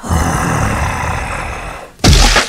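A monster roar sound effect: one loud, rough growl lasting nearly two seconds, slowly fading near the end.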